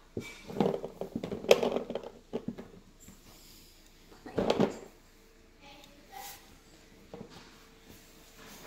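Scattered light knocks and rustles from objects being handled, with a louder knock about four and a half seconds in.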